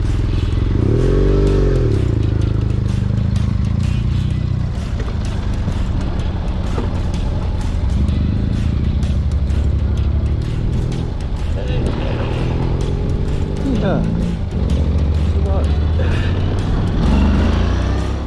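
Honda NC750X parallel-twin motorcycle engine running on a dirt road, with wind noise, revving up and back down about a second in. Later a rider's voice shouts and whoops.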